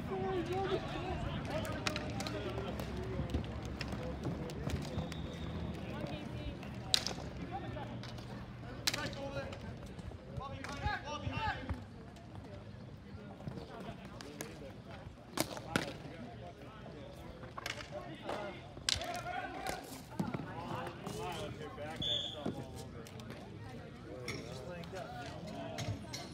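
Ball hockey in play: scattered sharp clacks of sticks hitting the ball and the ball striking the court and boards, over voices of players and spectators calling out.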